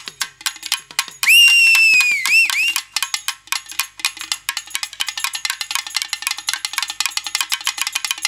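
Fast, busy percussion accompaniment of sharp high clicks and taps, about eight to ten strokes a second. About a second in, a loud shrill whistle cuts in for about a second and a half, its pitch sagging and then warbling twice before it stops.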